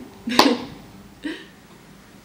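A woman's short laugh: a sharp, breathy burst about a third of a second in, then a softer breath of laughter just after a second.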